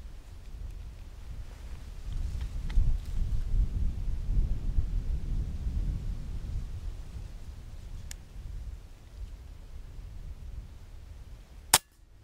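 A single sharp crack of an air rifle shot near the end, fired at a rabbit. Before it, a low rumble from about two seconds in that fades away, and a faint click.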